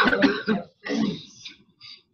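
A person clearing their throat: a loud rasp at the start, then a softer one about a second in.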